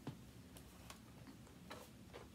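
Near silence with a few faint, irregular clicks and ticks: small objects being handled and set down.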